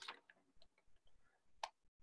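Near silence with a few faint, short clicks; the most distinct click comes about one and a half seconds in.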